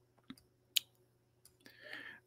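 Two brief soft clicks about half a second apart in a quiet pause, followed near the end by a faint breath.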